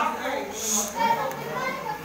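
Indistinct talk among teenage boys, with chatter from other students around them.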